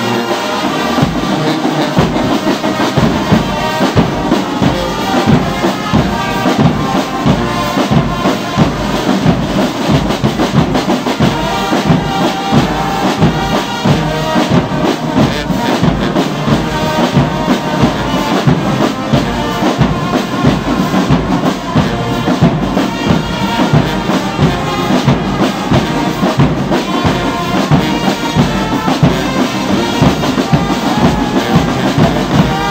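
A brass band playing, with trumpets and tubas over a steady bass-drum beat that comes in about a second in.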